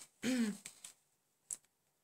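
A woman clears her throat once, a short voiced sound falling in pitch, near the start; a single short click follows about a second later.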